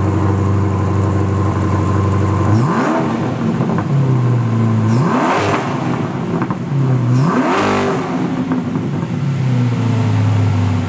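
Chevrolet C8 Corvette's V8 idling, then revved three times. Each rev climbs quickly and falls back, with the engine settling to idle near the end.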